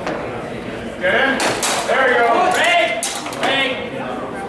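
Two sharp knocks of longsword blows in a fencing bout, about one and a half and three seconds in, under voices calling out.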